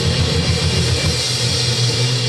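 Live blues band playing loud: electric guitars and a drum kit. A fast pulsing low line gives way to a held low note about halfway through.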